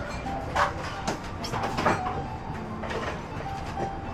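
Café room noise: a steady low rumble with several short, sharp clinks and knocks in the first half, and faint music underneath.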